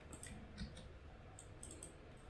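A few faint, scattered clicks of computer keyboard keys being pressed.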